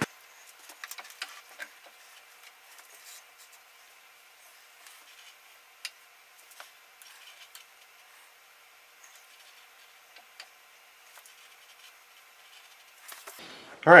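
Faint, scattered small clicks and rubs of hands working metal parts on a milling machine while the boring head is lined up over the workpiece, with no motor running.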